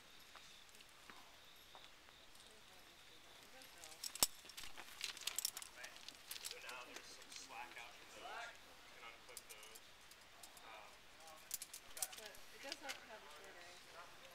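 Faint, indistinct voices talking, with sharp clicks: one about four seconds in, a cluster just after, and a few more near the end.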